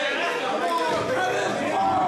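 Several people talking and calling out at once in a weight room, with no single voice standing out.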